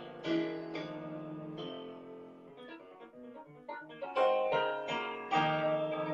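Keyboard in a piano sound playing a slow hymn. Full chords are struck every half second to second, thin to lighter single notes in the middle, then come back as full chords.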